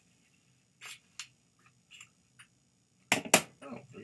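A new wallet's packaging being opened by hand: a few short, scattered rustles and clicks, then a louder burst of handling noise near the end.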